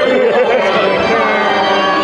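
A man singing through the ballpark's public-address system over music, a seventh-inning-stretch sing-along; the voice wavers on held notes.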